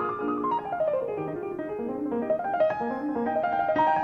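Piano music: a melody runs down through the first second or so, then climbs back up over held lower notes.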